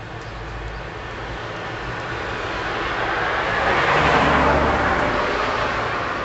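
A road vehicle driving past on the street: its noise builds gradually, peaks about four seconds in, then fades away.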